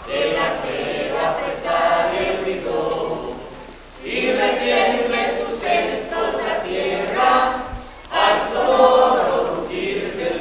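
A group of people singing together in unison without accompaniment, in phrases with short breaths about four and eight seconds in.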